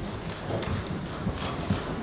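Irregular soft knocks and handling noises at a table close to the microphones, over the low murmur of a crowded room.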